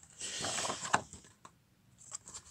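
A heavy paper page of a large booklet being turned by hand: a paper rustle lasting about a second, with a light snap near its end.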